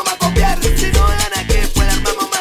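Salsa music with a steady beat.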